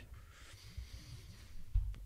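A pause in speech: a man's faint breathing close to a microphone over a low room hum, with a short deep bump on the microphone just before the end.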